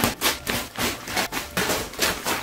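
Brown paper package wrapping being ripped open by hand in a quick series of short rips and tugs, several a second.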